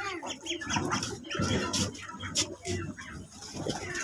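Backyard chickens and chicks calling, a scatter of short clucks and peeps, with a few sharp knocks.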